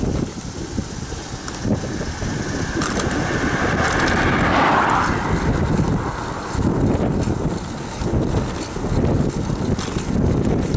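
Wind buffeting the microphone of a handlebar-mounted camera on a road bike at speed, over a steady rumble of tyres on asphalt. A louder rushing swell builds and fades in the middle, peaking about five seconds in.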